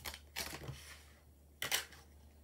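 Hands handling a clear plastic stamp-set case and its sheets, making two short plastic rustling clicks: one about half a second in and one about a second and a half in.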